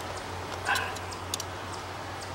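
Faint crisp ticks of a small knife blade cutting along the cells of fresh beeswax comb, over a steady low hum. A short, louder sound comes just under a second in.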